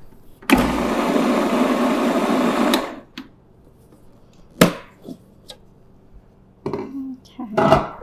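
Food processor running for about two and a half seconds, blending hummus toward smooth, then stopping. A sharp click comes a couple of seconds later.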